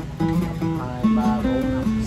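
Morris acoustic dreadnought guitar played fingerstyle: a melody of picked notes over changing bass notes and chords.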